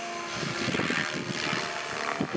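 SAB Goblin 500 electric radio-controlled helicopter flying overhead, its rotor and motor making a steady whine with several held tones.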